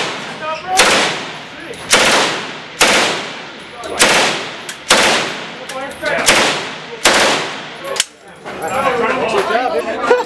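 A fully automatic submachine gun fired in about seven short bursts, roughly one a second, each shot cluster ringing and echoing in an indoor shooting range.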